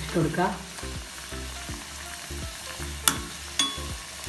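Potato vadas deep-frying in a cast-iron kadai, the oil sizzling steadily around them. A steel slotted spoon clicks sharply against the pan twice about three seconds in, half a second apart.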